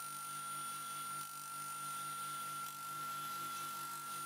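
Benchtop scroll saw running while it cuts a small piece of wood: a low, steady hum.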